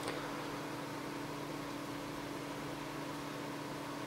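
Steady background hiss with a low, even hum: room tone.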